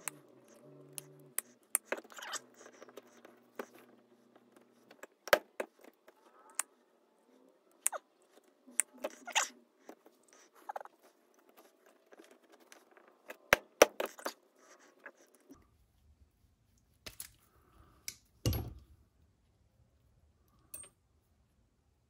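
Irregular sharp clicks and taps of pliers and a small driver against the plastic and metal parts of a 1/18-scale RC truck's front steering assembly as it is taken apart, with a louder knock late on.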